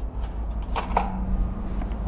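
Handling noise from a handheld camera being carried and turned: a steady low rumble with a few light knocks and clicks within the first second.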